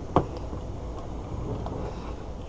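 A single sharp click just after the start as the anchor leash's clip is fastened to the kayak's bow loop, then a steady low background rumble.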